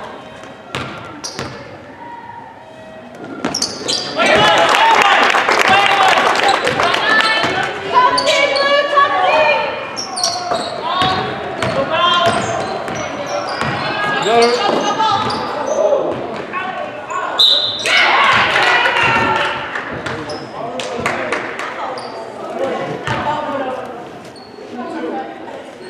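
Basketball bouncing on a hardwood gym floor during play, with many short strikes. Spectators and players shout and call out over it from about four seconds in.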